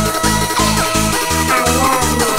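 90s hard trance music played from vinyl: the steady four-on-the-floor kick drum drops out, leaving a pulsing synth bass and high synth lines, and a falling synth sweep slides down in pitch in the second half.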